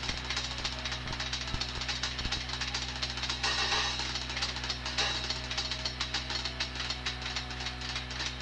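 A drum kit played live in rapid, dense strokes on the drums and cymbals, with a steady low hum from the recording underneath.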